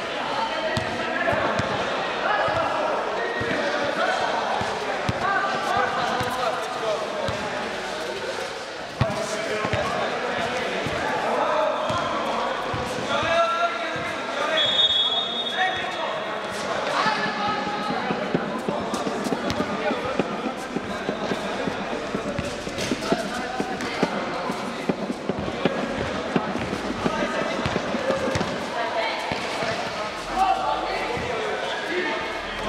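A basketball being dribbled and bouncing on an indoor sport-court floor during a game, with players' voices calling out around it. A short high-pitched squeak comes about halfway through.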